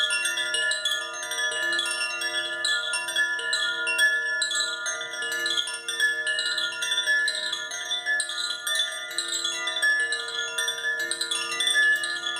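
Handheld heart chakra chime swung gently by its ring, its clapper striking the tuned rods at random. Several clear, overlapping tones ring on steadily, freshly struck every moment.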